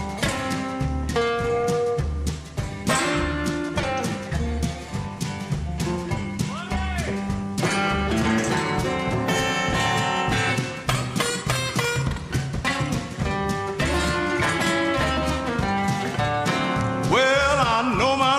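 Acoustic blues guitar playing an instrumental break: picked treble notes with a few string bends over a steady, regular bass line. A singing voice comes in near the end.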